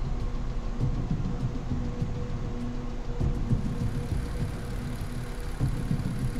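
A low, steady rumbling drone with a faint held tone running through it.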